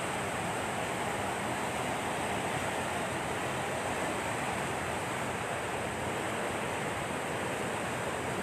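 Water gushing out of a concrete culvert outlet and churning into a channel: a steady, even rush of water with no breaks.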